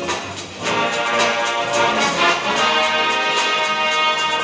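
Live jazz ensemble with a horn section and drums playing; the full band comes in louder about two-thirds of a second in.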